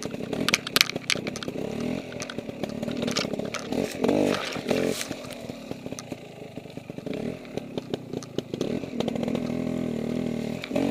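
KTM Freeride 250R two-stroke dirt-bike engine running at low, uneven revs that rise and fall as the bike picks its way over rough ground. Sharp clicks and knocks come through about half a second in and again around five seconds in.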